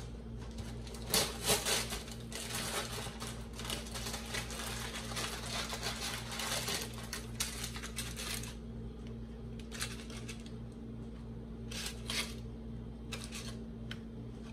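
Paper cookie bag and its pleated paper sleeve rustling and crinkling as cookies are pulled out by hand, with a few sharper crackles, over a steady low hum.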